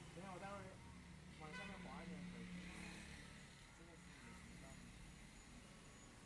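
Quiet room tone with a steady low hum, and faint, indistinct voices talking briefly twice, about half a second in and again around two seconds in.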